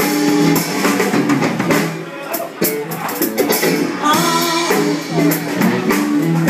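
Live blues band playing through a club PA: drum kit, electric bass and electric guitar, with a woman singing into a handheld microphone.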